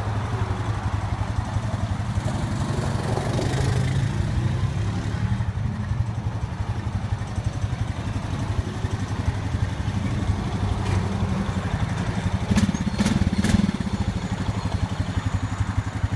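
A 2016 Honda Rancher 420 ATV's single-cylinder four-stroke engine idling steadily, with fast, even firing pulses. It gets slightly louder briefly about three-quarters of the way through, and a few sharp clicks come near the end.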